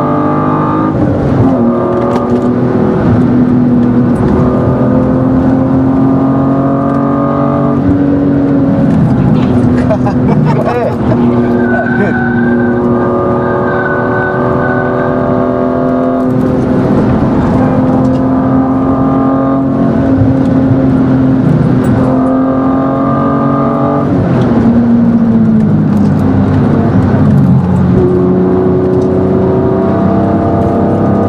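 BMW E36 M3's straight-six engine heard from inside the cabin, pulling hard at high revs on track. Its pitch drops and climbs back several times as the driver lifts and changes gear.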